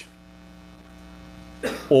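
Steady electrical mains hum, several level tones held unchanged through a pause; a man's voice starts again near the end.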